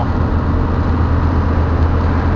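Dodge Ram's Cummins inline-six turbodiesel cruising at about 1,650 rpm and 55 mph, heard from inside the cab: a steady low drone under a hiss of road noise.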